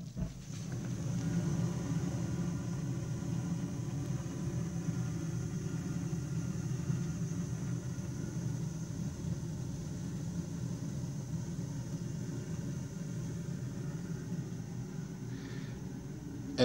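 Weil-McLain CGa gas-fired boiler running: a steady low rumble with a faint high tone above it, setting in suddenly at the start.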